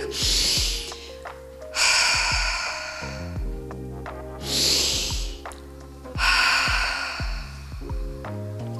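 A woman breathing audibly in a calming breathing exercise: two cycles, each a quick short inhale followed by a longer exhale, inhaling on a count of two and exhaling on four. Background music plays under the breaths.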